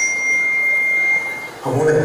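A single steady high-pitched tone cuts in suddenly and holds for about a second and a half before fading, and a voice starts just after it.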